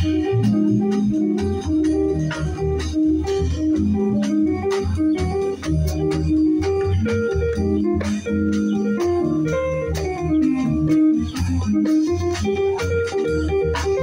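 Live instrumental band: a Roland RD-300SX digital keyboard plays held, organ-toned chords over a walking upright-bass line and conga drums struck by hand.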